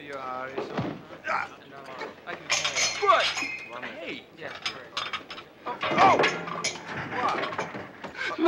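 Short wordless voice sounds mixed with clinks and knocks.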